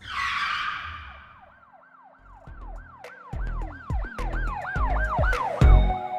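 Channel logo sting: a whoosh, then a siren-like electronic yelp sweeping up and down about three times a second, with deep bass hits and sharp ticks building under it.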